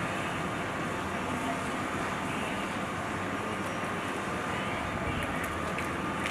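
Quadcopter drone hovering overhead: a steady propeller buzz with a faint, even high whine.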